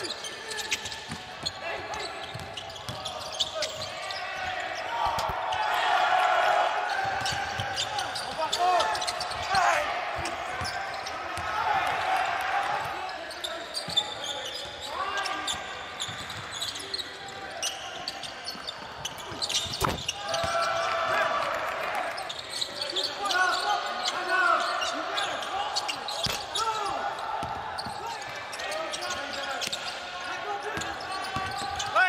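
Live basketball game sound in a large hall: the ball bouncing on the hardwood court amid voices calling out on and around the court. A single sharp hit stands out about twenty seconds in.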